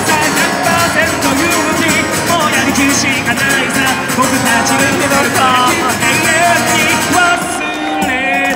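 A band playing a pop-rock song live, with singing over guitar.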